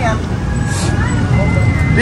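Steady low rumble of a vehicle engine running nearby, under faint voices, with a brief hiss just under a second in.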